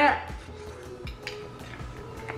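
A spoon clinking lightly against a glass bowl holding fruit and ice, a few faint clicks.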